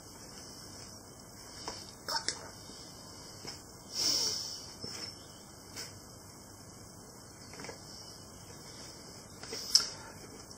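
Quiet handling sounds of a thin plastic mixing bowl held upside down while sticky dough slowly peels away inside it: a few faint, scattered clicks and soft crinkles, with a half-second rustle about four seconds in.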